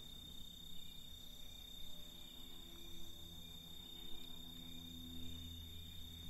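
Faint evening ambience: a steady high-pitched drone of crickets over a low hum.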